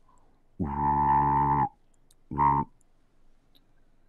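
A man's voice making a sci-fi tractor-beam noise: a steady, flat buzzing hum about a second long, then a shorter one.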